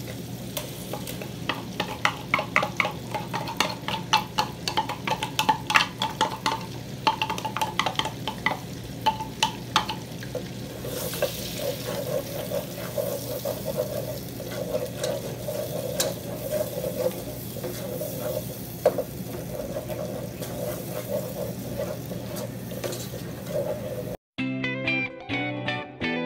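Ground corn frying in melted butter in a pot, sizzling steadily while it is stirred with a wooden spoon. For the first ten seconds or so there is a quick run of taps and knocks as the corn is scraped in and worked about; after that the sizzling and stirring go on evenly.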